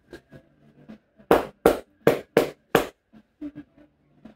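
Five sharp hand slaps in quick succession, about three a second, a little over a second in: the barber's percussive massage strokes on the customer's head and shoulders.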